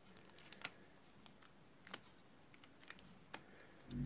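Faint, scattered small clicks and crackles as an adhesive nail stencil is picked at and peeled off a plastic nail tip with a thin tool, with a soft low thump near the end.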